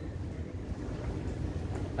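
Steady low rumble of outdoor background noise, with wind buffeting the microphone.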